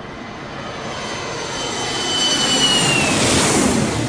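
A jet-plane flyby sound effect: a rushing noise that swells, with a high whine that drops in pitch as it passes about three seconds in, then begins to die away.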